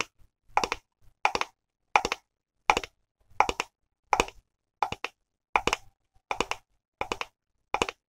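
A crumpled plastic bottle squeezed and scratched in the hand, giving short crackling bursts in a steady rhythm of about three every two seconds.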